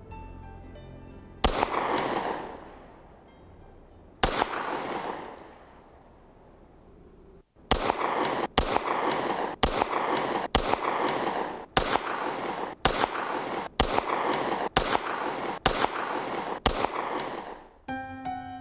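Colt All American 2000 9 mm pistol being fired: two single shots about three seconds apart, each with a long echoing tail. Then a quick string of about ten shots, roughly one a second.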